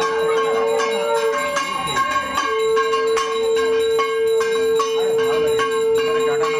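Puja hand bell ringing rapidly with quick, uneven strokes. Under it runs a long steady tone that stops for about a second, then resumes.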